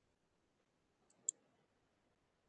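Near silence broken by two quick, sharp clicks about a second in, most likely computer mouse clicks while setting up screen sharing.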